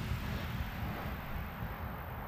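A low, steady background rumble with nothing distinct happening in it.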